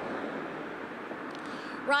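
Steady outdoor street noise with road traffic in it.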